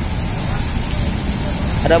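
Intercity coach bus's diesel engine running as the bus pulls away, a steady low rumble.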